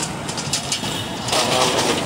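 Street traffic with a vehicle engine running, a few light knocks in the first half, and a louder rush of noise over the second half.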